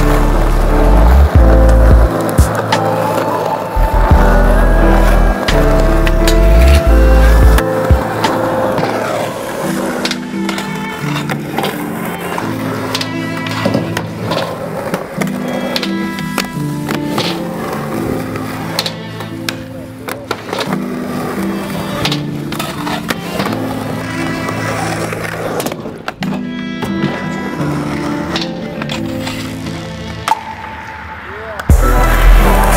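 Skateboards rolling on concrete, with sharp clacks of tail pops and board landings on the ramps, heard over a song. The song has a heavy bass beat in the first eight seconds and lighter backing after that.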